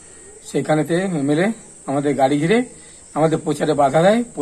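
A man speaking Bengali in three short phrases with pauses between, over a faint steady high-pitched whine.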